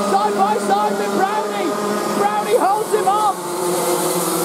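Several TAG 125cc two-stroke kart engines racing, their pitch rising and falling in short swoops as the karts brake and accelerate through a corner.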